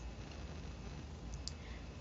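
Faint room tone with a steady low hum, and two faint small clicks a little past the middle.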